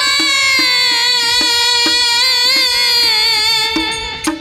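Bengali devotional song: a woman's voice holds one long, slowly falling note with harmonium accompaniment, while a drum keeps a steady beat of about two strokes a second.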